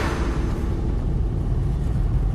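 Steady low rumble of city road traffic, with the tail of a music sting fading out over the first second or so.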